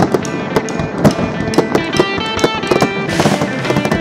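A music track with aerial fireworks bursting over it: sharp irregular pops, and a crackling hiss from about three seconds in.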